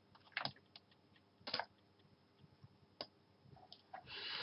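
A few faint, sharp clicks of a computer mouse, scattered and irregular, including a quick pair about half a second in and another about a second and a half in.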